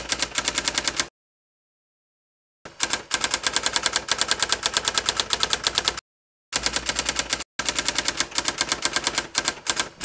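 Typewriter sound effect: rapid keystroke clicks, about ten a second, in runs. The clicks stop dead for about a second and a half after the first second, and again briefly about six seconds in.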